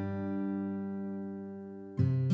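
Background music: a strummed acoustic guitar chord ringing on and slowly fading, with the next strum coming in right at the end.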